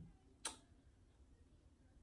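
Near silence: room tone, with one short sharp click about half a second in.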